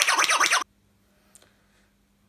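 A loud, fast, rhythmic burst of rock instrument playing, with a quick repeating pulse, cuts off suddenly about two-thirds of a second in. Near silence with a faint low hum follows.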